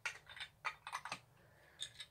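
Faint, irregular light clicks and taps of a small plastic carriage-shaped trinket box and its clear dome lid being handled and turned over in the hands.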